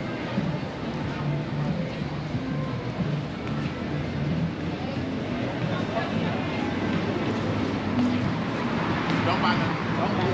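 Busy city-sidewalk ambience: passersby talking over a steady hum of traffic on the street, with some music mixed in.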